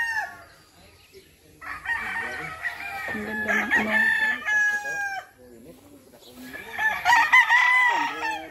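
Roosters crowing: one crow trails off about half a second in, several long crows overlap from about two to five seconds in, and another starts near the end.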